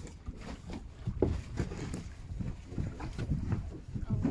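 Water sloshing and splashing against the side of a small boat as a fish thrashes at the surface, with wind on the microphone. The splashes come irregularly, the strongest about a second in.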